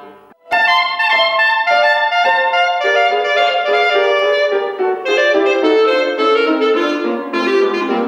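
Solo clarinet playing a classical competition piece with piano accompaniment, coming in about half a second in: quick runs of short notes, then longer held notes.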